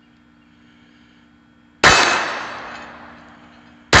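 Two shots from a Taurus TX22 .22 LR semi-automatic pistol, the first about two seconds in and the second at the very end, each followed by a long, slowly fading ring from the struck steel target.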